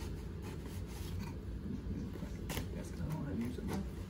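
Knife blade slitting the packing tape along the seam of a cardboard box, a scratchy scraping with a few sharp crackles, the loudest about two and a half seconds in. A steady low hum lies underneath.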